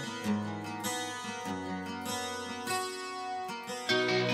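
Acoustic guitar picking a melody of separate notes over lower held tones, the instrumental intro of a song; the music swells louder and fuller just at the end.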